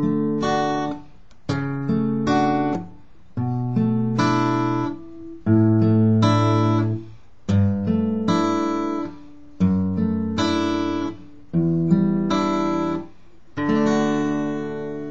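Acoustic guitar playing a D major chord slowly, about one chord every two seconds, with its bass note moving down the scale through B, A, G, F sharp and a low open E before returning to D. Each chord is plucked and left to ring.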